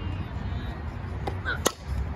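A softball bat hitting a pitched softball: one sharp crack about one and a half seconds in, the ball put in play.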